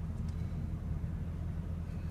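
Steady low hum of a Mercedes-Benz SL heard from inside its cabin, the engine and road noise of the car in traffic.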